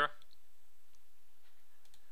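Steady low room hiss with a few faint computer mouse clicks.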